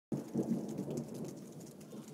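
Freezing rain and pea-sized hail falling during a thunderstorm: a dense low rumble that fades over the two seconds, with faint scattered ticks of pellets striking.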